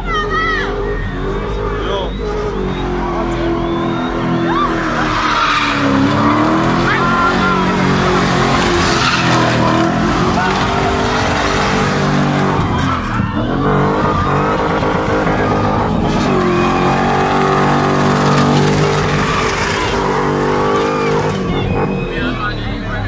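BMW E30 'box' engine held at high revs with its tyres squealing as the car is spun, the engine pitch dipping and climbing again several times.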